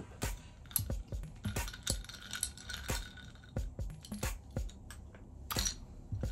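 Ice cubes and a metal straw clinking against a drinking glass of iced coffee while it is sipped, a series of small sharp clinks. Quiet music plays underneath.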